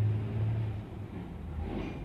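A low, steady rumble that weakens about a second in, with a deeper hum coming up near the end.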